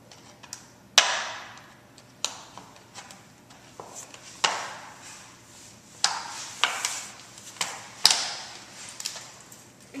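Empty plastic two-liter bottle crackling and popping as the point of a pair of scissors is jabbed into its side to punch a hole, a series of sharp irregular cracks with the loudest about a second in and about eight seconds in.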